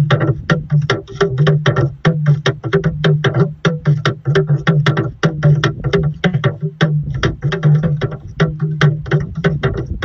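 Yoruba hourglass talking drum (dùndún) struck with a curved stick in a fast rhythm of several sharp strokes a second. Its pitch steps between two main tones as the drum is squeezed.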